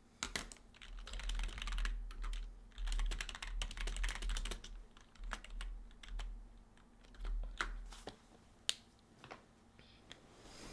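Typing on a computer keyboard: two quick runs of keystrokes in the first four and a half seconds, then scattered single key presses with pauses between them.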